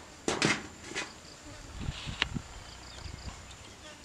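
Cooked fish being handled and pulled apart on a corrugated metal sheet: a cluster of crackling handling noises about half a second in, then single sharp knocks near one and two seconds. Faint, evenly repeated insect chirps run underneath.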